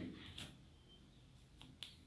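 Near silence with a few faint clicks, two of them close together near the end.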